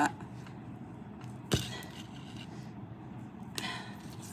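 Quiet handling of a fine metal chain necklace with a glass pendant as it is pulled straight: one sharp click about a second and a half in, and a faint rustle near the end.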